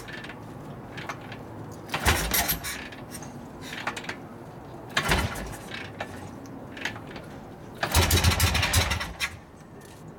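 Repeated kick-start attempts on a 1961 Harley-Davidson XLCH Sportster's Ironhead V-twin. A short burst of cranking and coughing comes about every three seconds, the last one about a second long, and the engine does not keep running.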